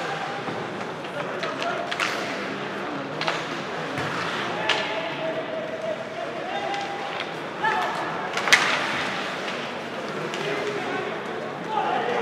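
Ice hockey game heard from the stands: spectators' voices and calls over the rink's murmur, with sharp clacks of sticks and puck, the loudest about eight and a half seconds in.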